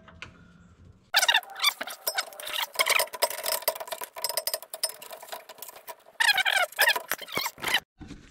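A wrench working the aluminium AN fitting on a braided steel oil line, loosening it: a busy run of metal clicks and rattles begins about a second in, with squeaks and squeals that are loudest near the end.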